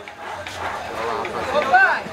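Background chatter of several people's voices, with one voice standing out briefly near the end.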